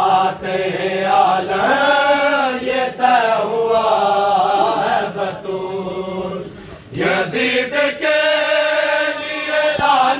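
Men chanting an Urdu noha, a Shia lament, in a loud sung recitation led by a noha reciter. The chant dips briefly about two-thirds of the way through, then comes back in full.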